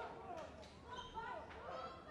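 Several voices shouting and calling at ringside, faint and overlapping, with a few short thuds of punches or feet on the ring canvas about half a second in.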